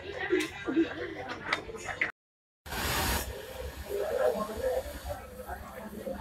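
Women laughing and talking indistinctly, broken off about two seconds in by an abrupt half-second drop to dead silence. It is followed by a short burst of hiss and then low, indistinct voices.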